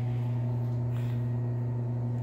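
A steady low electrical or machine hum with a row of evenly spaced higher overtones.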